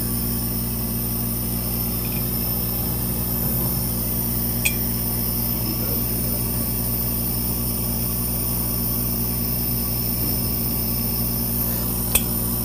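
Steady machine hum made of several constant tones from a powered-on laser engraving machine and its equipment, with one light click about five seconds in.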